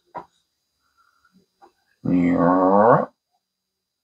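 A short click near the start, then about two seconds in a low, drawn-out vocal sound lasting about a second, its pitch dipping and rising slightly.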